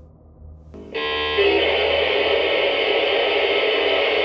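Loud warped electronic noise like a radio being tuned between stations: a wavering pitched sound that begins under a second in, then a dense steady hiss-and-buzz with a held tone underneath.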